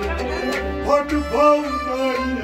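Live Kashmiri Sufi music: a harmonium holding sustained reedy notes, with a melodic line that slides up and falls back twice around the middle.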